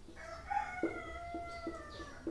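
Rooster crowing: one long call, drifting slightly down in pitch toward the end.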